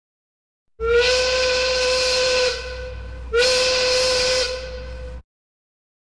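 A loud whistle sounding two long blasts over a breathy hiss, each blast sliding slightly up in pitch as it starts; the sound cuts off abruptly after the second blast.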